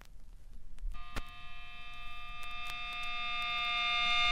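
Opening of a grindcore track: after about a second of faint amplifier hum, a held electric guitar drone of several steady tones fades in and swells louder.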